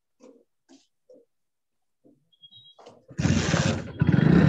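A few short, faint rubbing strokes of a duster wiping a whiteboard. About three seconds in, a sudden loud, rough noise with a low pulsing drone starts and carries on.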